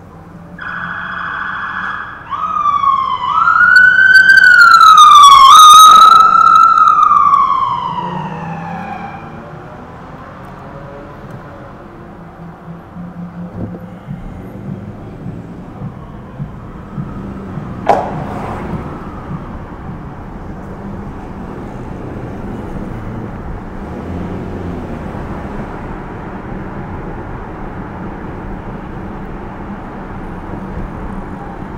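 Police siren sounding briefly: a steady tone for about a second and a half, then a wail that rises and falls, loudest a few seconds in and fading away by about nine seconds. A single sharp chirp comes near the middle, then steady car and road noise as the car drives on.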